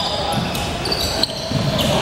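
Sounds of a basketball game in a reverberant gym: a ball bouncing on the hardwood court and brief high shoe squeaks, over background voices.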